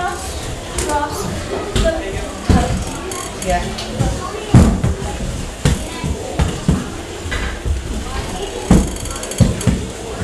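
Off-ice skate wheels rolling on a hard hall floor with a low rumble, broken by about five sharp knocks as the skates step down and land, the loudest about halfway through.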